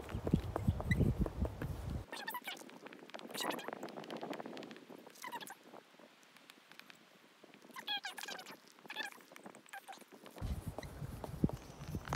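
A few short, high chirping calls from a bird or squirrel in open oak woodland, quick and bending in pitch, about five, eight and nine seconds in. At the start and near the end a dry-erase marker scratches in short strokes on a small whiteboard, over a low rumble.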